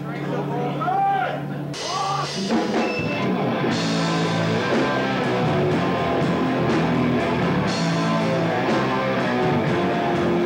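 A heavy metal band playing live starts a song after a short spoken announcement over a sustained low guitar tone. Guitars come in about two and a half seconds in, and the full band with drums is playing by about four seconds.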